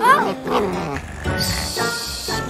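Cartoon dog's voiced call, rising then falling in pitch, over background music, followed by a hushing "shh" near the end.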